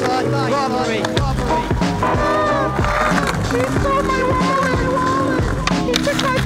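A music track with sustained chords and gliding melodic lines, over which a skateboard's wheels roll across brick paving. A sharp clack comes just before the end as the board hits a concrete ledge.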